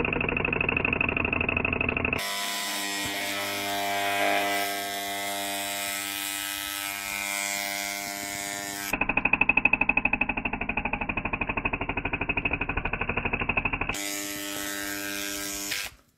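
Loud electrical buzzing from arcing inside an opened miniature circuit breaker as it carries fault current. The buzz changes character abruptly about two seconds in, again near nine seconds and near fourteen seconds, and pulses rapidly from about nine seconds on.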